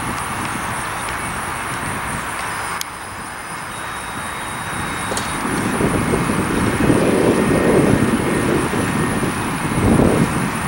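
McDonnell Douglas MD-80 airliner's tail-mounted Pratt & Whitney JT8D jet engines during the landing rollout: a steady jet noise that dips about three seconds in, then a low rumble that swells from about five and a half seconds as the jet passes broadside.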